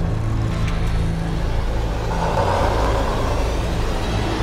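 A film trailer's sound design: a deep, steady rumbling drone, with a rushing swell that builds in the second half.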